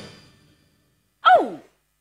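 A woman's single short vocal exclamation about a second in, sliding sharply down in pitch, picked up on a headset microphone.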